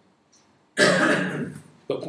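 A man clearing his throat once, a sudden rasp lasting about a second.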